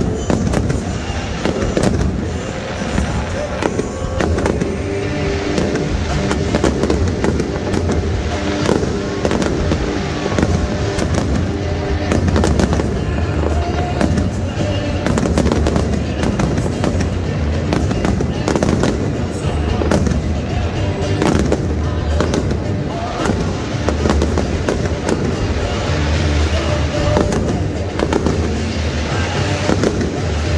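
Aerial shells of a Zambelli fireworks display bursting in continuous rapid succession, a dense run of bangs and crackles, with music playing underneath.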